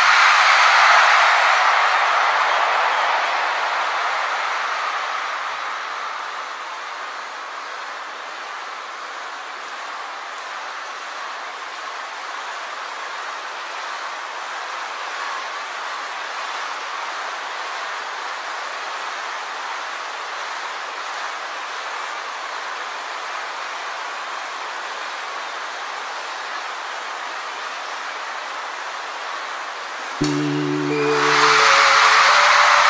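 Large concert crowd cheering. It is loudest at the start and eases over about six seconds to a steady level.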